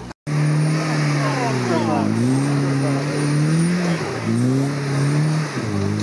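An open two-seater car's engine pulling up a steep, muddy trials climb. The revs rise and fall repeatedly, dipping about two and four seconds in. The sound starts after a brief break near the beginning.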